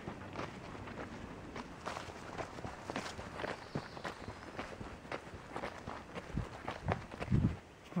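Footsteps of a person walking on a grassy dirt track, about two steps a second, with a couple of low thumps near the end.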